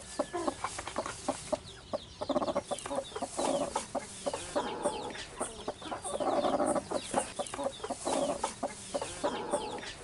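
Broody hen clucking in repeated short bursts, about one a second, as a hand reaches under her to set eggs, with straw rustling and small clicks in between.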